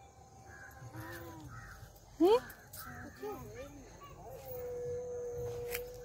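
Crows cawing, about four caws in quick succession in the first two seconds, among faint voices. A short rising cry, the loudest sound, comes a little after two seconds in, and a long steady held tone runs through the last second and a half.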